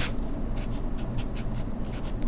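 Sharpie permanent marker writing on paper: a run of short, scratchy pen strokes.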